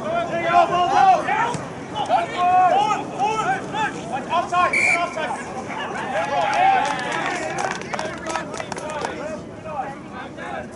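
Men's voices shouting and calling out during rugby play, the words unclear.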